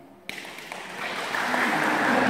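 Group applause from a seated crowd, starting suddenly about a quarter second in and swelling to full strength by the end, with a few voices mixed in.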